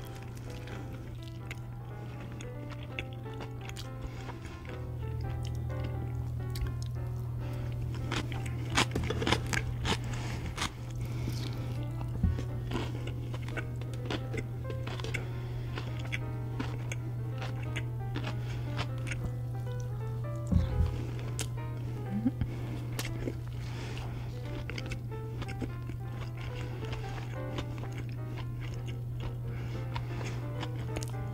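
Background music with a steady low drone and a simple melody, with close-miked eating sounds over it: scattered bites and chewing of fried food, loudest about 8 to 12 seconds in and again about 21 seconds in.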